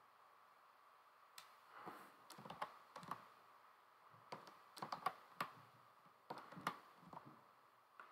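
Faint, irregular clicking of a computer keyboard and mouse, with single clicks and short clusters of two or three.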